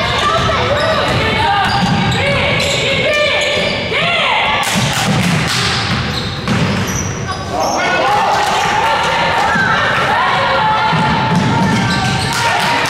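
A basketball dribbled on a hardwood gym floor, with many short sneaker squeaks on the court and voices in the gym.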